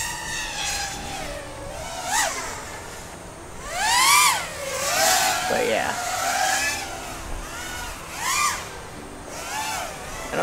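Electric motors and props of a 5-inch FPV quadcopter, mounted upside down as a pusher, whining in flight; the pitch rises and falls with each throttle punch, loudest about four seconds in. Wind noise rumbles underneath.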